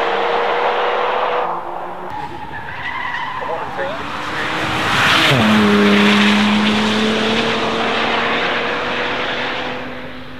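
Bentley Batur's 6.0-litre twin-turbo W12 engine pulling hard, its steady note slowly rising. About five seconds in, at its loudest, the note falls sharply as the car goes past, then settles into a lower steady tone as it pulls away, with tyre noise throughout.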